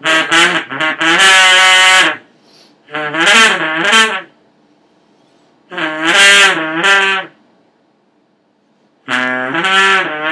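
Homemade horn made from a coiled length of black hose, lip-buzzed by someone who cannot play the horn: four blown phrases of wavering, shifting brassy notes, the first opening with a few short blats before a held note.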